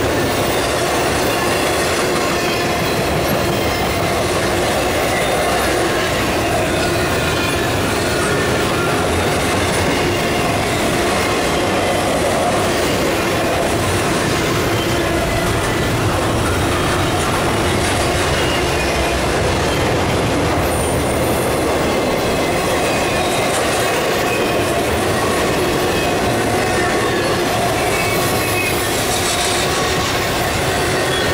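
Intermodal freight cars, trailers on flatcars and then double-stack container well cars, rolling past close by. Their steel wheels on the rail make a steady, unbroken rumble and rattle.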